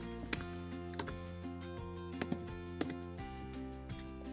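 Computer keyboard keystrokes: about seven separate sharp clicks, spaced roughly half a second apart, over soft background music with steady held tones.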